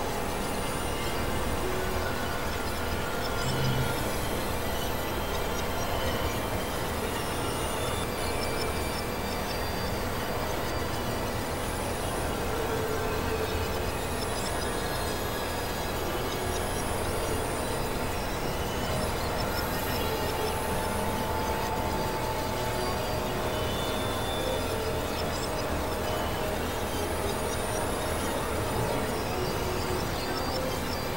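Experimental electronic noise music: a dense, steady wash of overlapping drones, tones and noise, with short high squeals recurring every second or two.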